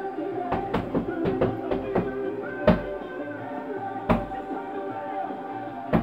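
Punches landing on a heavy punching bag: a quick run of thuds in the first two seconds, then heavier single hits about two and a half and four seconds in, over music playing in the background.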